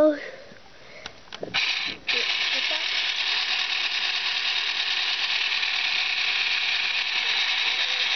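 Small electric food mixer running steadily, its beater whirring through cake crumbs and milk. It starts about two seconds in, after a couple of clicks.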